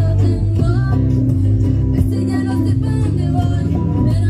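A young girl singing a pop song live through a microphone and PA, over band accompaniment with guitar and a strong bass.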